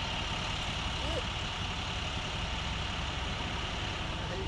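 Steady low rumble of an idling vehicle engine, with a thin steady high whine running through it.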